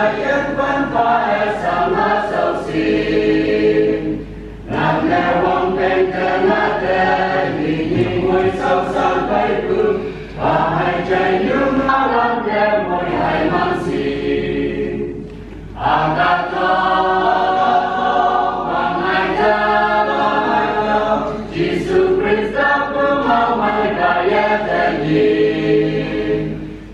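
A mixed choir of men's and women's voices singing a hymn in parts, in phrases a few seconds long with short breaks between them.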